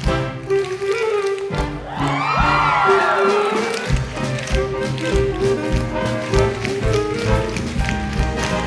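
Tap shoes of a dancing ensemble tapping in rhythm on a wooden stage over orchestral show-tune accompaniment, with a swooping rise and fall in pitch about two seconds in.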